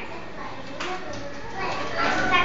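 Faint voices of young children murmuring, a little louder near the end.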